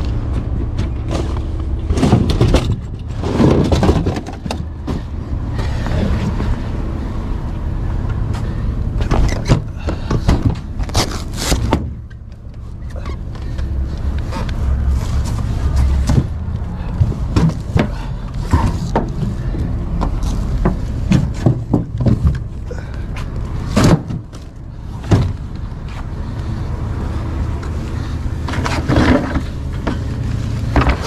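Furniture being handled and loaded into a pickup truck bed: repeated knocks, bumps and scrapes of wood and cushions against the bed and each other, over a steady low rumble.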